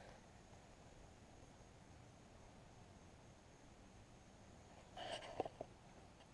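Near silence: faint outdoor background hiss, with a brief soft sound and two small clicks about five seconds in.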